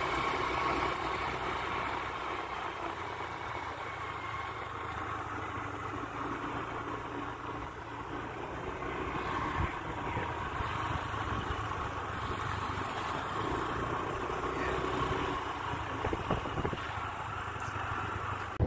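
Small two-wheeler engine running steadily at low speed while riding, with wind and road noise.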